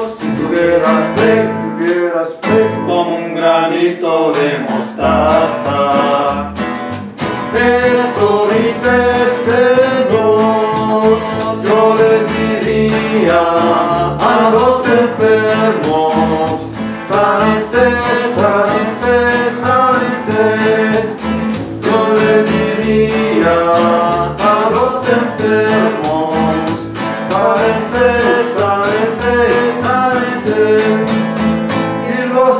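Upright double bass and acoustic guitar playing together in a country-style tune, the bass plucked under strummed and picked guitar. The bass drops out briefly near the start and comes back in about five seconds in.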